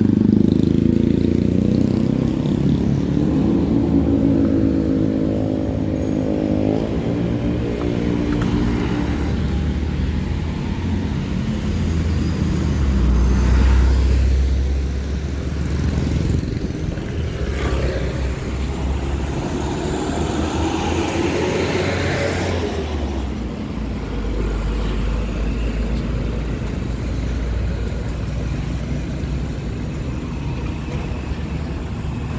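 Motorcycles and scooters passing on a city street. A motorcycle engine climbs in pitch as it accelerates over the first several seconds. More vehicles pass around the middle, with a low engine rumble and tyre noise.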